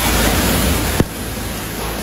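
Pressure washer spray blasting into the inside of a plastic wheeled garbage can: a steady, loud rush of water. A sharp click comes about a second in, and after it the spray runs slightly quieter.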